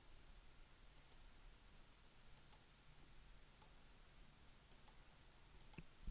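Faint computer mouse clicks, several in quick pairs, over near-silent room tone.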